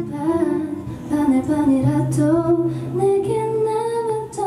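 A woman singing live into a microphone, her melody gliding between held notes, over soft acoustic guitar.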